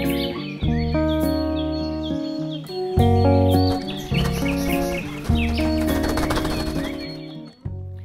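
Gentle intro music of sustained chords changing every second or so, with birds chirping over it.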